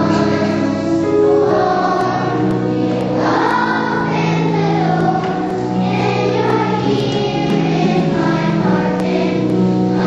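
A children's choir singing in unison over a musical accompaniment with low, held notes underneath.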